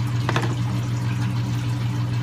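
Steady low hum of an aquarium sump's water pump, with water running through the system.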